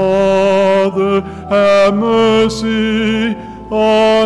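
A male cantor singing slow liturgical chant: long held notes in short phrases, with brief pauses between them.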